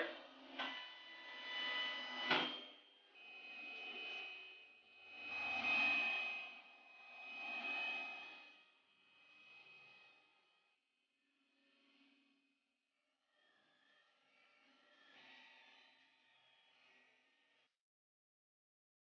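Several FDM 3D printers running together, their stepper motors whining in swells that rise and fall as the print heads move. The sound is loudest in the first half, grows faint after about ten seconds, and near the end the whine glides up and down in pitch.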